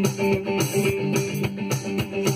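Fender Nashville Telecaster electric guitar playing a blues riff between vocal lines, over a steady beat of about four strokes a second.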